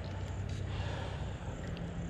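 Steady background outdoor ambience, a soft even hiss with a faint low hum and no distinct event.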